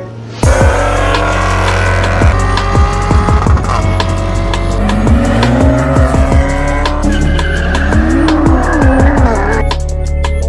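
Car engines revving and tyres squealing, mixed over loud electronic music with a heavy bass beat that starts suddenly about half a second in.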